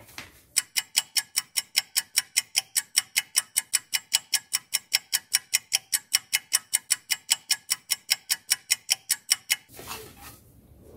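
Ticking-clock sound effect: sharp, evenly spaced ticks, about five a second, that stop abruptly near the end.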